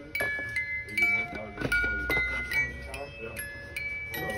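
A music box playing a tune of high, bell-like notes that ring on and fade, several a second, with faint voices underneath.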